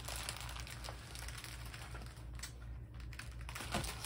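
Hands rummaging through a pile of dyed linen pieces: soft rustling and crinkling, with a short lull a little past halfway.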